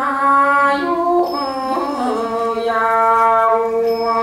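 Thai classical-style vocal singing in long, held, ornamented notes that bend in pitch, over a lower sustained accompanying line. A new phrase begins right at the start.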